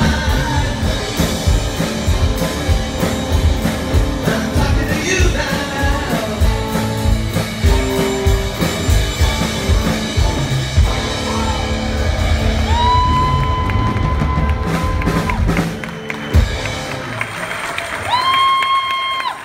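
Live rock band playing: electric guitars, electric bass and a drum kit with a male lead vocal. In the later part a long steady high tone sounds for about two seconds, and the drums thin out near the end.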